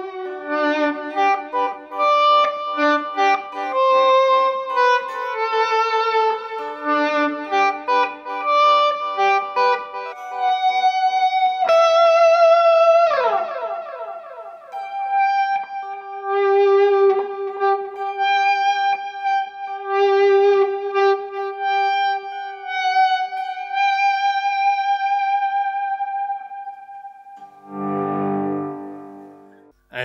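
Electric guitar (a hollow Telecaster) played with volume swells from a Morley Pro Series volume pedal, through overdrive and a reverb in echo mode, giving a bowed, violin-like tone. A melody of swelled notes, then a quick downward slide partway through, then long held notes, and a brief fuller chord near the end.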